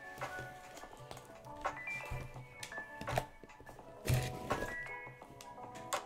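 Quiet background music with a beat and melodic notes, with a few thumps from hands handling a shipping package about two, three and four seconds in.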